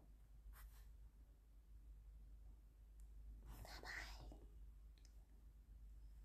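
Near silence over a steady low hum, with a faint whispered breath from a woman about three and a half seconds in and a small click near the start.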